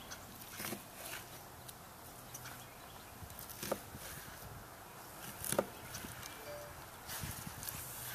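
A few faint, sharp taps of a knife blade hitting a plastic cutting board as lamb loin is sliced into steaks, spread a second or more apart.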